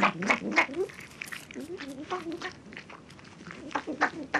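An animal calling in quick, short, repeated yelps, several a second, easing off around the middle and coming back strongly near the end.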